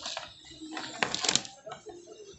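Small clicks and rattles from the plastic housing and circuit board of an opened Bluetooth speaker being handled, with a short cluster of clicks about a second in.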